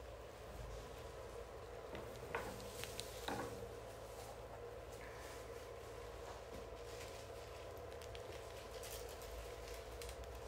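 Faint rustling of flower stems and leaves as a large hand-tied bouquet is turned and handled, with a few small crackles about two to three and a half seconds in, over a steady low hum.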